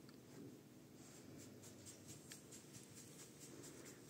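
Near silence: room tone with a faint, steady low hum and a few faint small ticks.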